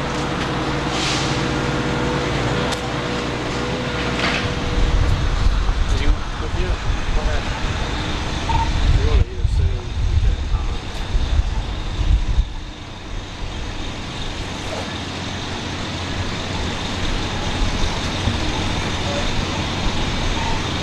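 Road traffic outdoors: an engine hum for the first few seconds, then a louder, uneven low rumble from about five to twelve seconds in, like a heavy vehicle passing, settling back to a steadier traffic background.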